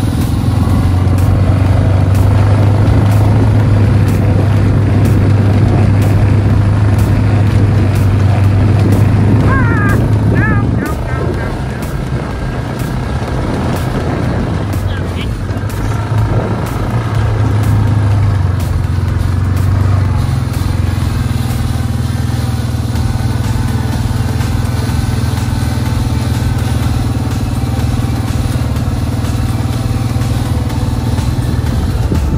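A vehicle engine running steadily at low speed with a low hum. The hum eases a little about eleven seconds in and picks up again later. A few short rising calls come around ten seconds in.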